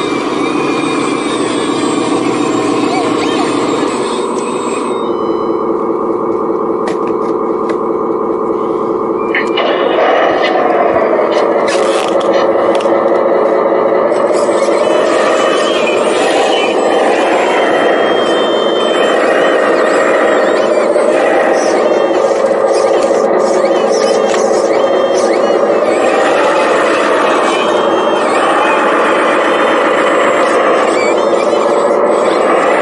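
Radio-controlled wheel loader and Volvo A40G articulated dump truck models working: a steady whine of small electric motors and gearing, several tones at once, growing louder from about ten seconds in and wavering in pitch as the loader works.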